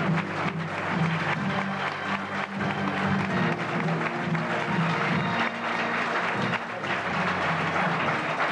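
Studio audience applauding over a bright play-on tune with a bass line, greeting a guest's entrance.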